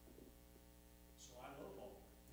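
A faint, steady electrical hum, with a man's voice starting faintly a little past halfway.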